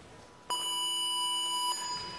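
Electronic start buzzer sounding one steady tone, beginning about half a second in and lasting a little over a second; it signals the start of the heat.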